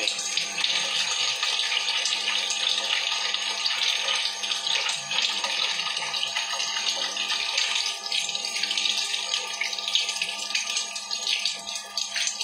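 Kitchen tap running water into a sink during washing-up, a steady hiss.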